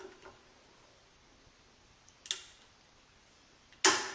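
Two sharp metal clicks about a second and a half apart, each with a short ring: the underlever of an HW 77/97 air rifle action being worked and snapping into its latch, tried without the mainspring fitted.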